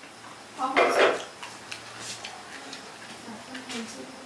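Small clicks and taps of fingers and food against a steel plate while eating by hand, with a short burst of a woman's voice about a second in.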